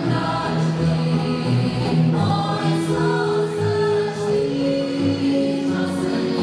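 Choral music: voices holding long sustained chords over a soft low pulse about twice a second.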